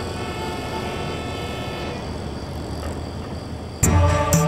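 Steady city traffic noise, a continuous hum of passing vehicles, with music coming in abruptly just before the end.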